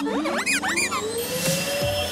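Robot vacuum cleaner answering with a quick run of electronic chirps that slide up and down in pitch during the first second, then a tone rising slowly in pitch as it starts up.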